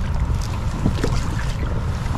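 Wind buffeting the microphone in a steady low rumble, with light splashes and drips from a double-bladed kayak paddle stroking through the water.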